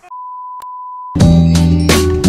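A steady electronic beep held at one pitch for about a second, with a brief click in the middle, then loud funky music with a heavy bass line and guitar cuts in abruptly.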